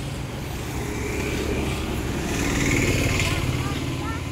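A motor engine running steadily, with a low, even drone that grows a little louder in the second half.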